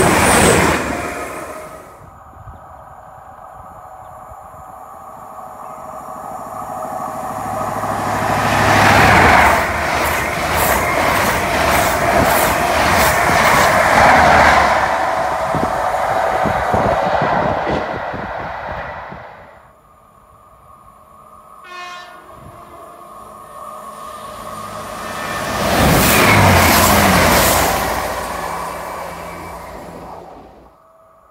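Passenger trains passing at speed on a main line: a diesel unit dies away at the start, then a High Speed Train with Class 43 diesel power cars builds to a loud rush of engine and wheel noise with rapid rail clatter, fading away after about 18 seconds. Another loud swell of train noise comes near the end.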